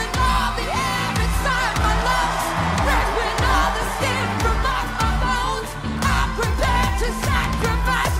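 A singer performing a pop song over a backing track with a heavy, steady bass beat, the voice sliding and wavering between notes.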